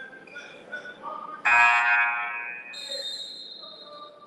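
Gym scoreboard horn sounding once, about a second and a half in. It lasts about a second, then rings on in the hall as it fades. A fainter high steady tone follows near the end.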